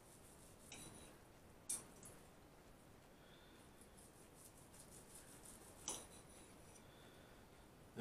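Near silence with a few faint clicks and scrapes of a knife and fork against a plate as a roast beef joint is sliced, the clearest about two seconds in and near six seconds.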